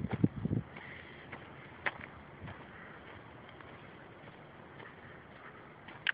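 Quiet outdoor background in a grassy park, with a few low thumps right at the start and scattered faint clicks. One sharper click comes about two seconds in.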